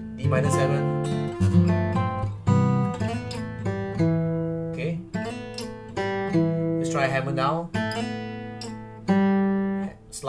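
Olson SJ steel-string acoustic guitar with a cedar top and Indian rosewood back and sides, played in a slow chord progression: picked notes and chords, one or two a second, each left to ring.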